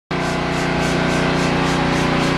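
An engine running at a steady speed: a constant low hum with a faint regular pulse about three times a second.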